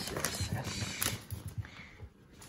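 Clear plastic bag of cheese-cube dog treats crinkling and rustling as it is handled, with short clicky crackles, growing fainter near the end.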